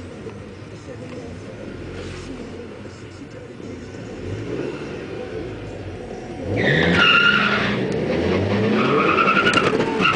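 Car engines idling at a drag strip start line, then a hard launch about six and a half seconds in, with tyres squealing and an engine revving up in rising sweeps through gear changes.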